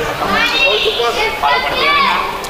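Chirigota performers' voices on stage: several high-pitched, expressive voices calling out and talking over one another, their pitch swooping up and down.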